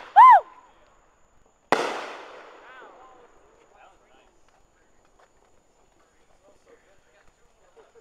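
A firework bang sounds just before the start and is cut off by a short, high, rising-and-falling shriek, the loudest sound here. Nearly two seconds in a second sharp firework bang goes off and echoes away over about a second and a half. After that only faint scattered sounds remain.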